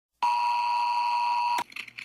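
Emergency-broadcast-style attention tone: a steady electronic beep near 1 kHz lasting about a second and a half, starting and cutting off abruptly. It is the alert signal that announces an emergency bulletin.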